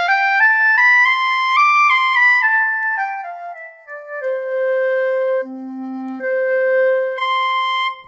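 SWAM virtual clarinet played from an Akai breath controller, running a C major scale up an octave and back down in smooth, connected steps. About five and a half seconds in it drops an octave for a moment and then jumps back up, an octave change made with the controller's thumb rollers.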